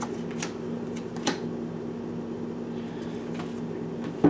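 A deck of oracle cards shuffled by hand, giving three sharp card snaps, the loudest about a second in, over a steady low electrical hum.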